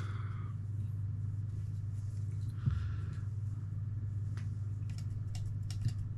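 Light clicks and a soft knock from a microphone being handled and adjusted in its shock mount on a tripod stand: one knock about halfway through, then several thin clicks near the end. A steady low hum runs underneath.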